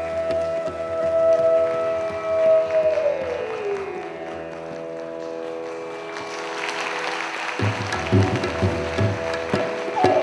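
Bamboo flute (bansuri) holding a long note that slides down in pitch about three seconds in, over a steady drone. Audience applause rises about two-thirds of the way through, and tabla strokes come in shortly after.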